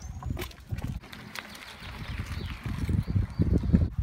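Irregular low rumbling of wind buffeting the microphone during outdoor filming, loudest in the last second and a half, with a short high chirp at the start.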